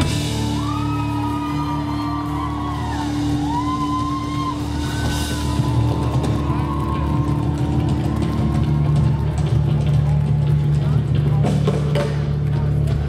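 Live rock band playing through stage speakers: singing over electric guitar, bass and drums, in a large hall.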